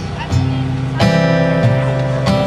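Acoustic guitar starting a song: a low bass note about a third of a second in, then a full strummed chord about a second in, with the bass note changing shortly after.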